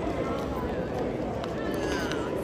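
Pedestrian street ambience: indistinct voices of passers-by chatting, mixed with footsteps on paving, at a steady level.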